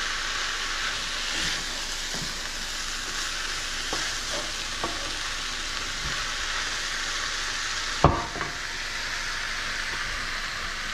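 Stir fry of tempeh and vegetables sizzling steadily in a hot skillet while a wooden utensil stirs it, with a few light taps and one sharp knock about eight seconds in.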